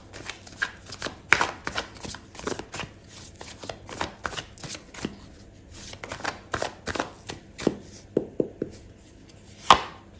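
A deck of tarot cards being shuffled by hand: quick, irregular taps and slaps of cards striking together, a few a second, with one louder slap near the end.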